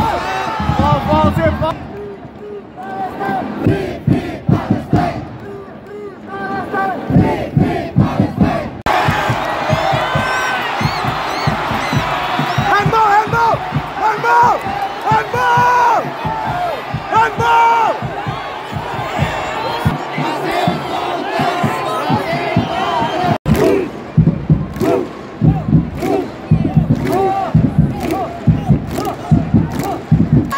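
Football stadium crowd chanting and shouting together, many voices at once. The sound breaks off sharply and picks up again about nine seconds in and again about twenty-three seconds in.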